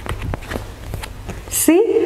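A few soft knocks and rustles from a stiff paper picture card being handled, over a low rumble; a woman's voice comes in near the end.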